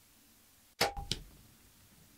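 A bow shot: a loud sharp crack of the string's release about a second in, then a second, smaller crack about a third of a second later as the arrow strikes the aoudad.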